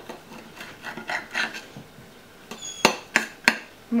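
Knife blade moving through a heap of spiralized courgette noodles on a ceramic plate: soft scrapes, then three sharp ringing clinks of the blade against the plate near the end.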